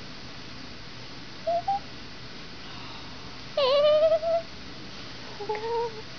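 Newborn baby cooing: three short coos, a small two-note one, then the loudest, which dips and rises slightly, then a lower one near the end.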